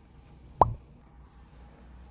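A single short plop with a quick downward slide in pitch, about half a second in, over a faint low hum.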